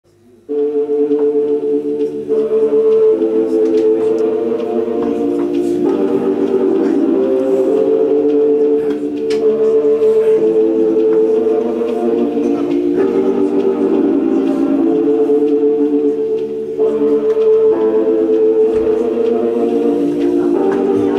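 Live band instrumental intro: sustained electronic keyboard chords that change every couple of seconds, starting about half a second in.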